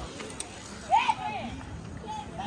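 Outdoor street background with a brief voice calling out about a second in, from the crowd of people gathered with their bicycles.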